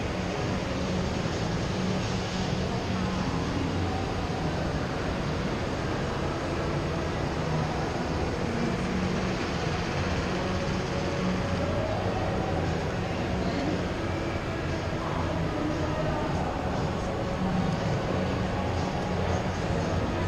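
Steady background noise of an indoor shopping mall concourse: a low rumble with faint, indistinct voices of passing shoppers.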